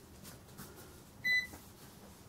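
Sam4s ER-940 cash register giving one short, high key-press beep about a second in, as a key is pressed on its alpha keyboard.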